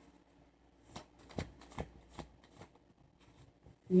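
A deck of tarot cards being shuffled by hand: about five soft, evenly spaced card flicks and taps, starting about a second in.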